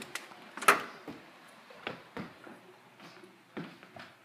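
Scattered knocks and footstep sounds of people walking into a house through a door, with one sharp knock just under a second in and fainter ones later.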